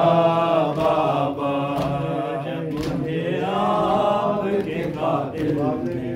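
A group of men's voices chanting a noha, a Shia mourning lament, together. Sharp slaps come roughly once a second, the beat of matam chest-beating.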